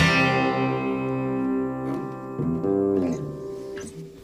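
Guitar strikes a final chord that rings out and dies away over about two seconds, followed by a few softer notes that fade out: the end of a live rock song.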